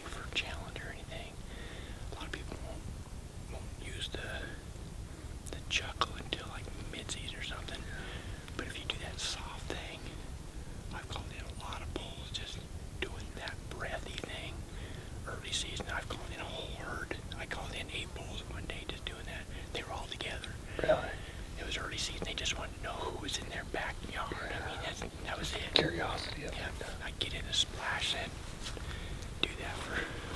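A man whispering: quiet, breathy speech with no full voice.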